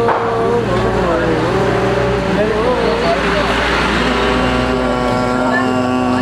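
A man's voice holding long, wordless notes that bend and slide in pitch, then settling onto one steady lower held note about two-thirds of the way through.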